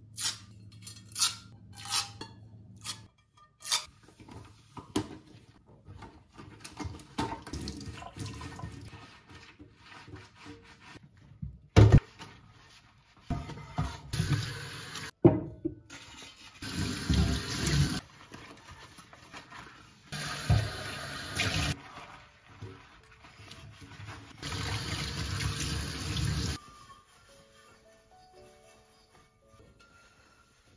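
Kitchen tap water running in four short bursts into a stainless steel sink as pots are rinsed, with two loud knocks of a pot being set down. A quick run of sharp clicks comes near the start.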